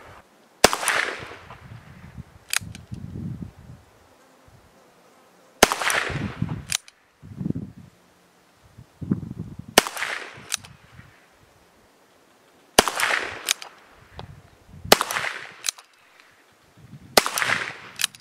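Six shots from a Ruger Wrangler single-action .22 LR revolver firing 36-grain copper-plated hollow points, spaced two to five seconds apart, each a sharp crack with a brief ring-out. Fainter sharp clicks fall between some of the shots.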